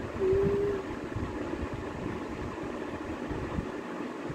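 A young child's brief, steadily held 'ooh'-like hum, about half a second long just after the start, over steady low room noise.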